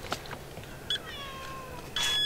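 Tabby house cat meowing once, about a second in: a single drawn-out cry that falls slightly in pitch, the cat crying to be let out.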